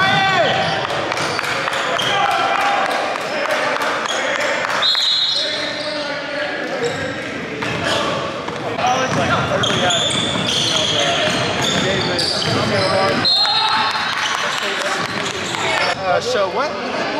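Indoor basketball game on a hardwood court: a ball bouncing, sneakers squeaking sharply twice, and players' voices calling out, all echoing in a large gym.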